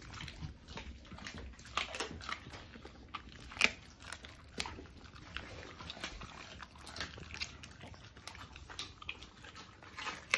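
Norwegian Elkhounds biting and chewing raw chicken legs: irregular wet crunches and mouth clicks, the loudest about three and a half seconds in.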